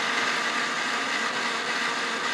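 Electric kitchen mixer grinder running steadily at speed, its stainless-steel jar blending a mango ice cream mixture.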